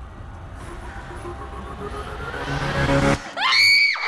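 Tense horror-score music swelling and growing louder, then a loud, high scream that rises sharply in pitch near the end and cuts off suddenly.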